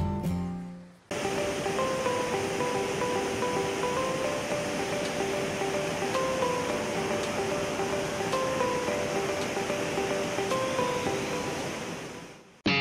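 A rushing waterfall with a gentle, simple melody of held notes over it. It starts suddenly about a second in and fades out near the end.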